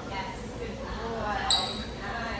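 Quiet speech in a large hall, with one sharp, high-pitched click about one and a half seconds in.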